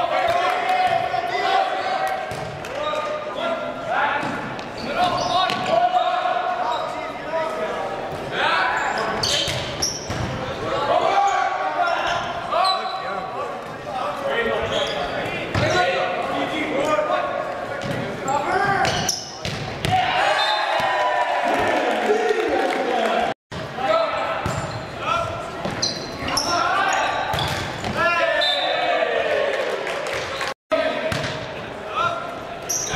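Indistinct shouts and calls from volleyball players and spectators ringing around a large gymnasium, with repeated sharp slaps and thuds of the ball being hit and hitting the hardwood floor.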